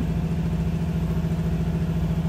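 FEELER VMP-40A CNC vertical machining center running its program: a steady mechanical hum with one strong held tone and a fast, even pulsing underneath.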